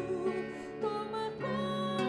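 Singing with soft instrumental accompaniment: a voice holding long notes that change every half second to a second over a steady backing.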